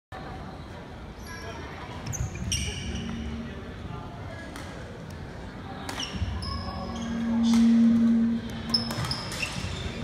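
Sports hall sounds: athletic shoes squeaking on the hardwood court, with scattered knocks and background voices echoing in the hall. A low steady hum swells for about a second and a half late on.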